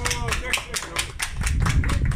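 A small group applauding, with the separate claps distinct in a quick, uneven patter.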